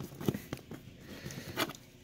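A few faint, scattered clicks and handling noise from a plastic action figure, a bootleg Mafex Venom, being gripped and posed by hand.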